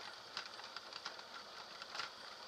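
Irregular knocks and rattles, several a second, as a handlebar-mounted camera is jolted by a motorcycle riding a rough dirt road, over a steady high hiss.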